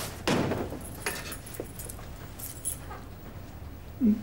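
A house door being pushed shut, with a muffled knock about half a second in, followed by a few light metallic clicks and jingles as of keys being handled.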